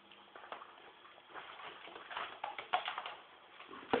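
Ferrets scrambling through play tubes and a box: an irregular run of short scratches, clicks and knocks that gets busier about a second and a half in.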